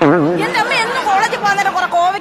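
A drawn-out, wavering vocal cry, then several voices talking over each other.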